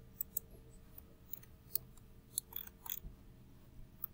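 Several sharp computer mouse clicks at irregular intervals, with a brief scratchy rustle near the end.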